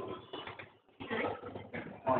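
Glass shop door pulled open by its metal bar handle: the door and handle clatter, once at the start and again about a second in.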